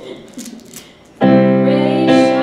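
About a second in, a Yamaha electronic keyboard with a piano sound begins playing a held chord, the opening of the song.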